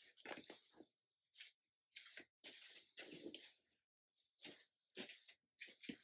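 Near silence, with faint, scattered rustles and light taps as things are handled and put away.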